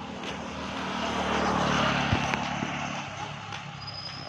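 A motor vehicle passing by: its engine hum and noise build to a peak about two seconds in, then fade away, with a brief knock near the loudest point.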